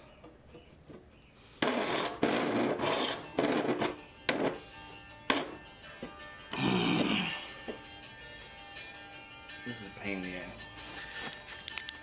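A chisel scraping and striking the wood in a few short strokes, with sharp clicks, over quiet background music.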